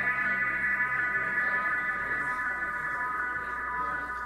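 Ambient electronic music played live from a laptop and controller: a drone of held high tones that goes on steadily. The low notes drop out about a second in as the piece winds down to its end.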